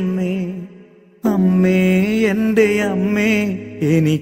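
Malayalam Christian devotional singing to Mother Mary: a sung melody with long held notes. It breaks off for a moment about a second in, then comes back.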